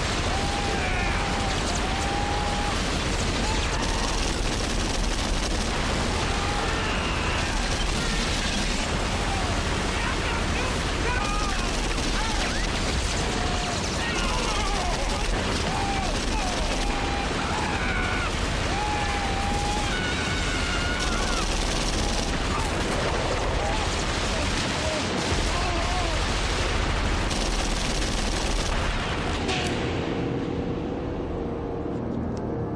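Continuous heavy automatic gunfire from a TV firefight scene, with voices yelling over the shots.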